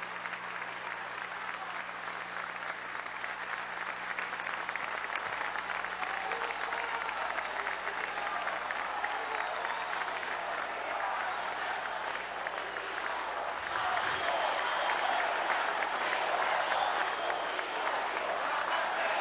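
Large audience applauding steadily, growing louder about fourteen seconds in.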